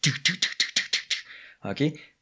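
A man imitating with his mouth the rapid fire of a BMP's cannon, like a machine gun: about ten sharp bursts in quick succession, roughly eight a second, lasting just over a second. He then says "OK?"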